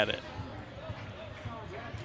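Gymnasium background: a basketball bouncing on the court floor under faint, distant voices echoing in the hall.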